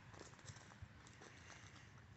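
Near silence with faint, irregular soft crunches: footsteps on wood-chip mulch.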